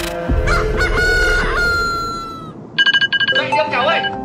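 Rooster crowing as an edited sound effect: one long call that falls in pitch as it fades, a cue for morning. About three seconds in comes a short burst of rapid ringing, and music picks up.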